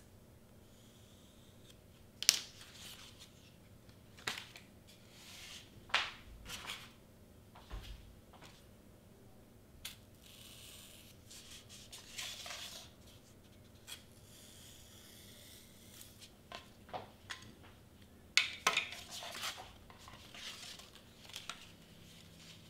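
Cardstock pieces being handled on a cutting mat: scattered sharp taps and short scratchy rustles as the paper is lifted, slid and pressed down, with a pen-like tool worked along the edges. The loudest clatter comes in a cluster about three quarters of the way through.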